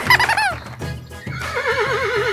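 A horse whinnying: a short call of quick falling notes at the start, then a long quavering whinny from a little past halfway, over background music with a steady beat.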